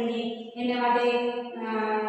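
A woman's voice reciting Gujarati lines in a sing-song chant, holding long steady notes, with a short break about half a second in.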